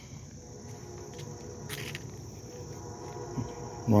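Steady, high-pitched chorus of insects, with a short scuffing noise a little under two seconds in.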